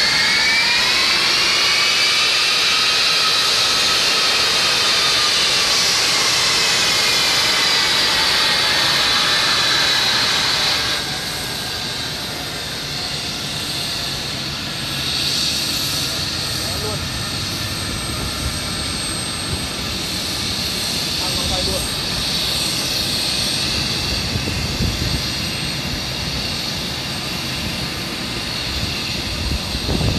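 Boeing C-17 Globemaster III's four Pratt & Whitney F117 turbofans while taxiing: a loud high whine that rises in pitch over the first couple of seconds and holds. About eleven seconds in the whine drops away suddenly, leaving quieter, steady jet engine noise.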